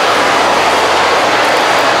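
Steady crowd hubbub filling a large, echoing mall concourse: many voices and footsteps blurred into one even wash of noise, with no single voice standing out.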